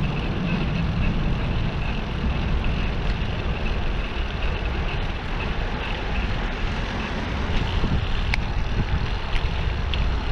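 Steady wind rumble and road noise on a bicycle-mounted camera's microphone while riding, with two sharp clicks near the end.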